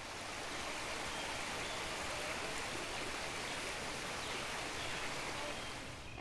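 Steady rush of running water, fading in at the start and easing off near the end.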